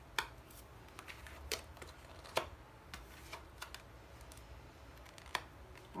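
Tarot cards being drawn from the deck and laid down on a cloth surface: faint, scattered snaps and taps, a few seconds apart.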